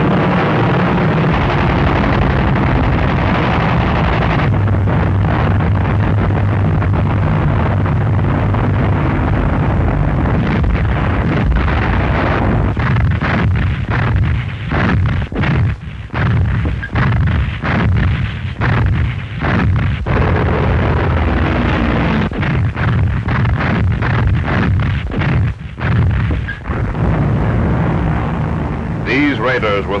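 Aircraft engines droning steadily in a wartime film soundtrack. From about ten seconds in, a long, dense run of anti-aircraft gunfire and shell bursts sounds over the drone.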